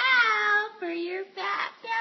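A woman's voice speaking in a high, sing-song tone, the pitch rising and falling throughout.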